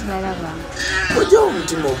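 Voices talking, with one short cry that rises and falls in pitch about a second in, the loudest sound here.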